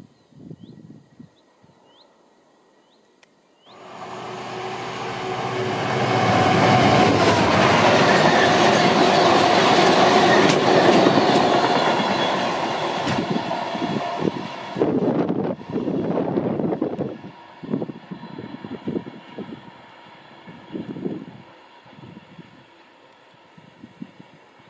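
Faint bird chirps at first; then, about four seconds in, a sudden start of a freight train of tank wagons passing close at speed, a loud rumbling rattle of wagons and wheels on the rails. After about ten seconds this breaks up into a rhythmic clatter of wheels over rail joints that fades as the train moves away.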